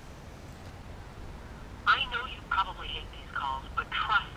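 A recorded telemarketing voice played through a mobile phone's speaker, starting about two seconds in; the voice sounds thin and narrow, like a phone line. It is an automated robocall sales pitch.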